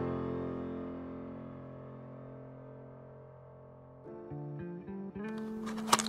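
Background music: a guitar chord struck once and left ringing, slowly fading, with a few new plucked notes coming in about four seconds in.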